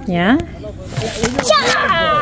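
Voices speaking: a short 'yeah' at the start, then a higher-pitched voice near the end.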